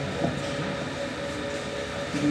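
Steady room noise: an even, low rumble and hiss.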